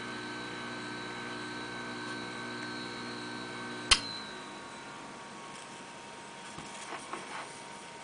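Jeweler's lathe running with a steady hum and a high whine while a carbide drill bit in a hand-held drill runner cuts a 0.55 mm pivot hole in hardened steel stock. About four seconds in there is one sharp click, after which the running tones fall away. A few faint taps follow near the end.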